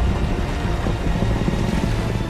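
Film sound effects of a large wooden sailing ship being dragged through the sea by the Kraken: a loud, deep, steady rumble with rushing water, under orchestral score music.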